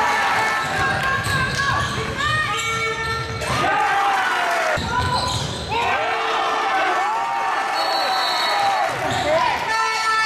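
Basketball being played on an indoor court: sneakers squeak in short chirps on the floor as players run, cut and stop, and the ball bounces, with voices of players and spectators in the hall.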